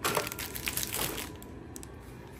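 Thin plastic grocery packaging crackling as it is gripped and moved on a kitchen worktop: a sharp crackle at the start, then a few shorter crackles over the next second or so.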